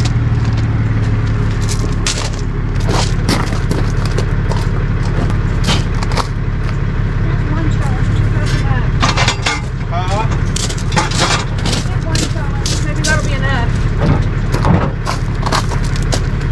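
An idling tow truck engine hums steadily under a run of sharp metal clanks and knocks as the wheel-lift is fitted under a car's front end for towing.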